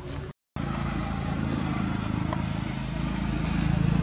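A motor vehicle engine running as a steady low drone that grows louder toward the end. The sound cuts out briefly just after the start.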